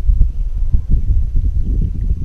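Wind buffeting the camera microphone: a loud, uneven low rumble with soft thumps.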